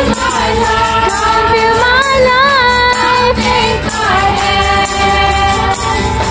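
Gospel worship song performed live: voices holding long, wavering notes over a band accompaniment with a steady beat.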